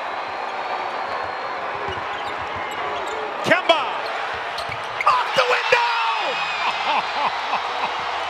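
Basketball being dribbled on a hardwood court, with sneakers squeaking over the arena crowd's steady noise. The sharpest squeaks and thuds come about three and a half seconds in.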